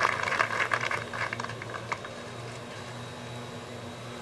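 Gallery applause and clapping around a golf green after a short putt, dying away over the first second or two. Quiet outdoor background follows.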